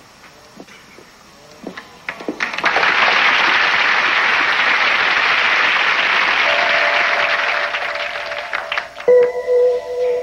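Studio audience applauding, starting a little over two seconds in, holding steady, then fading. Near the end a few steady musical tones come in as a short music cue.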